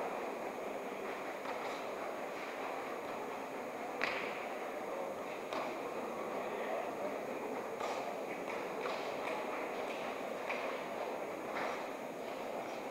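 Steady murmur of a sports-hall crowd with scattered sharp slaps and thuds of bare-knuckle punches and kicks landing in a full-contact Kyokushin karate bout, the clearest about four seconds in.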